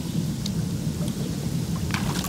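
Hot tub jets churning the water: a steady low rushing and bubbling, with a few faint ticks over it.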